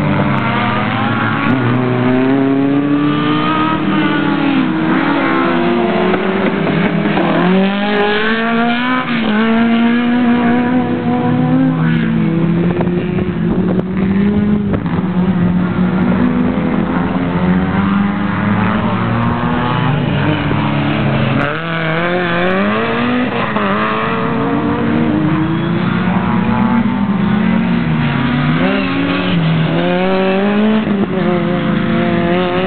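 Autobianchi A112 hatchback's four-cylinder engine driven hard through a slalom course: it revs up and drops back again and again as the car accelerates and slows between the gates.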